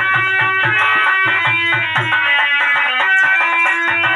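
Live Indian folk dance music: a hand drum beats a quick rhythm of deep strokes under a held melody line. The drum thins out after about two seconds while the melody carries on.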